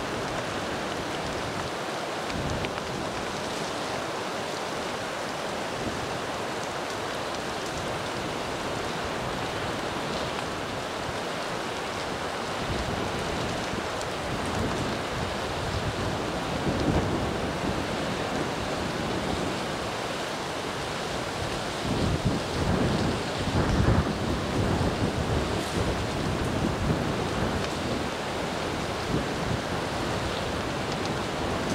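Steady rushing of wind through a smoky conifer forest. Gusts rumble on the microphone from about halfway through, strongest near the end.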